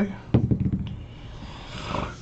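A multi-sided die tossed onto a desk mat, landing with a few quick clicks as it tumbles to a stop about half a second in.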